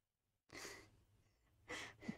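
Two short breathy exhalations from a person, like a sigh or a held-in laugh, about half a second in and again near the end, otherwise near silence.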